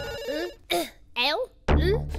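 A telephone ringing briefly, a steady trilling ring that stops within about half a second. A cartoon voice then makes a few short, rising and falling vocal sounds, and background music comes back in near the end.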